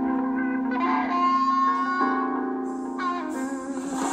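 Instrumental intro of a live band: electric guitar notes ringing out and changing about once a second over a steady held low note. A brighter, higher layer comes in about three seconds in.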